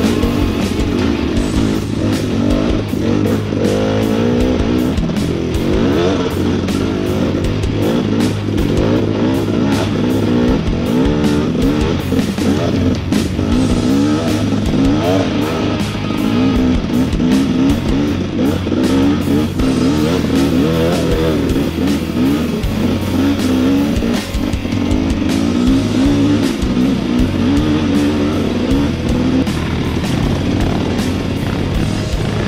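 KTM dirt bike engine revving up and down as it is ridden along a dirt trail, mixed with rock music with guitar.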